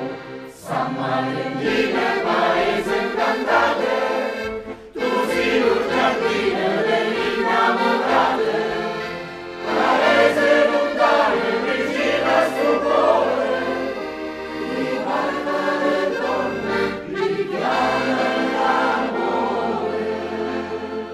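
A choir singing, in phrases several seconds long with short breaks between them.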